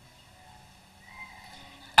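Faint room ambience in a pause in the speech, with a few faint held tones in the second half.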